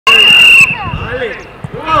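A loud, high steady tone for about half a second, cut off abruptly, then children's voices and soft thumps of footballs on the pitch.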